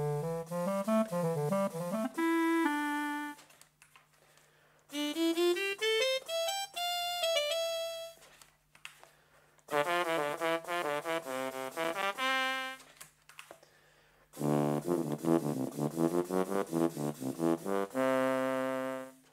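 Sampled wind-instrument voices from a Teensy wavetable synthesizer, played from a breath-blown cardboard MIDI wind controller through small computer speakers: a clarinet sound, then a straight trumpet, then a trombone. Four short melodic phrases with brief pauses between them.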